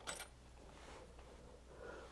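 Near silence: room tone with a faint low hum, and a brief faint sound right at the start.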